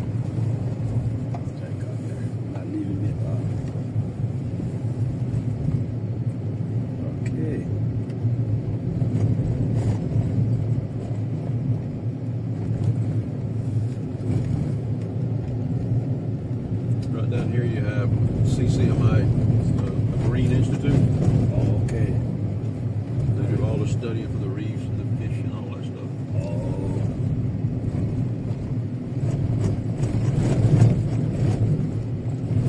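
Steady road and engine rumble of a car driving along, heard from inside the cabin.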